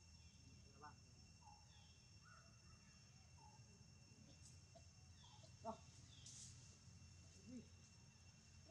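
Near silence: faint forest ambience, with a steady high insect drone and a bird's short falling call repeated every second or two. A single sharp click comes a little past halfway.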